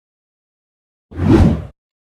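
A short, deep editing sound effect marking a video transition, starting about a second in, swelling and fading within about half a second.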